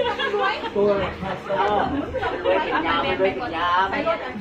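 A group of women chatting: several voices talking and greeting one another.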